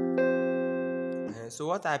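Electronic keyboard holding a chord that slowly fades, the closing chord of the song, then a man starts speaking over its tail about two-thirds of the way in.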